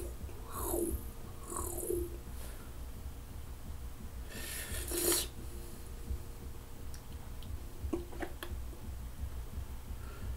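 A man breathing hard through his mouth against the burn of a hot chili pepper. There are a couple of short breathy sounds in the first two seconds, then one louder hissing breath about four and a half seconds in, and a few small mouth clicks near eight seconds, over a steady low hum.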